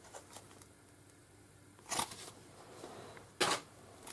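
Two brief rustles of plastic-wrapped packets being handled, one about two seconds in and a second near the end, with quiet between them.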